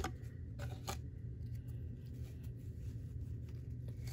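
Pokémon trading cards being handled and slid against one another: short soft flicks and rustles of card stock, the sharpest at the start and about a second in, over a steady low hum.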